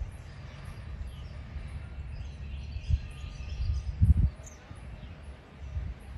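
Outdoor ambience of faint bird chirps over a steady low rumble, with two short thumps about three and four seconds in, the second the loudest.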